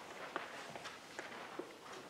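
Faint paper handling: soft rustle and a few light ticks as the pages of a book are leafed through.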